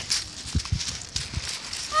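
A dog right next to the microphone on a shingle beach, making four short, low sounds between about half a second and a second and a half in.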